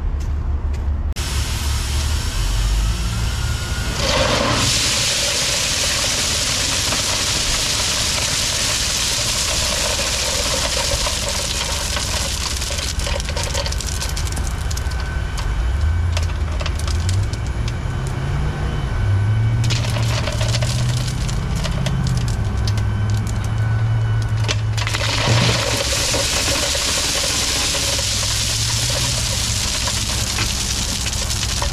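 Gravel pouring out of the tailgate of an aluminum East end-dump trailer: a steady rushing hiss that starts about four seconds in, thins out for several seconds past the middle and comes back strong near the end. Under it a diesel truck engine runs, its speed rising and falling.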